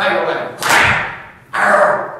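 A man speaking, broken by a short, sharp whooshing burst a little over half a second in.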